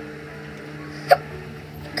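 A single short hiccup from a person, about a second in, over a steady faint room hum.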